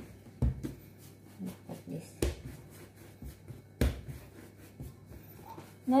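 Hands rolling and pressing soft doughnut dough on a stone countertop: soft pats and rubbing, with three sharp knocks on the counter, the two loudest near the middle.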